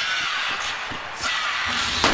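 Hockey arena crowd cheering over goal-celebration music after a home goal. Right at the end the arena's goal cannon fires with a sudden loud blast.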